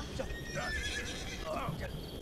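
Carriage horses whinnying and stamping their hooves, with people's voices, as a horse-drawn carriage is pushed and pulled free of a rut.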